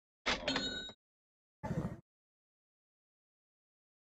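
A cash-register 'ka-ching' sound effect: a quick rattle with a bell ringing over it, lasting about half a second. A shorter, softer sound follows about a second later.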